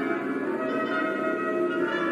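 Symphony orchestra playing a dense, sustained chord of many held, overlapping tones, with new notes coming in near the end.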